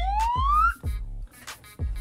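Music with a beat: deep bass notes that drop steeply in pitch several times, sharp percussive hits, and a siren-like whistling tone sliding upward that stops under a second in.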